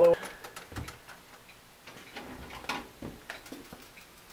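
Light, irregular mechanical clicks and ticks from the clockwork of an antique fire-alarm telegraph apparatus being worked by hand.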